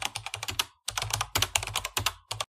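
Computer keyboard typing: a fast run of key clicks, broken by a short pause about three-quarters of a second in.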